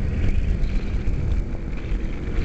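2008 Kawasaki Ninja 250R parallel-twin running at road speed, a steady rumble mixed with wind buffeting on the microphone.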